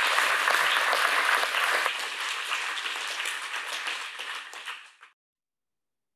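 Audience applauding, loudest for the first two seconds and then easing off, cut off suddenly about five seconds in.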